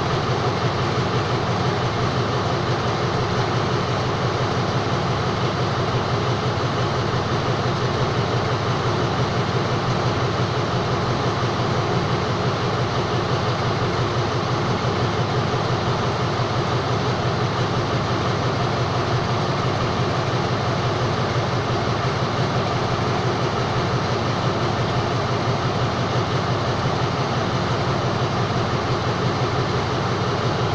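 A stationary diesel passenger train's engines running at idle: a steady, unchanging sound with no pull-away.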